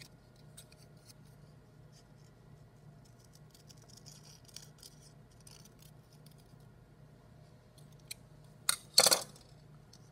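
Scissors making small, quiet snips through construction paper. Near the end, a brief louder scrape.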